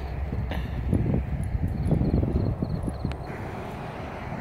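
Footsteps on a paved walking path: an irregular series of soft knocks over a steady low rumble.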